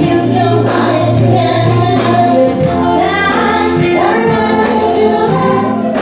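Live pop band playing, with several female voices singing together over drums, electric guitar, keyboard and a steady bass line.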